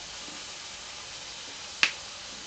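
Pork belly frying in a wok with a steady, soft sizzling hiss. Near the end comes a single sharp click, the loudest sound.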